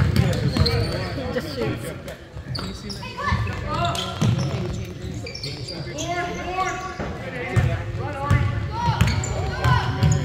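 A basketball being dribbled on a hardwood gym floor, sharp bounces echoing in a large hall, with players and spectators calling out at intervals.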